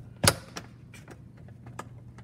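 One sharp plastic click from the handle of a Ninja blender pitcher as it is moved by hand, followed by a few faint ticks.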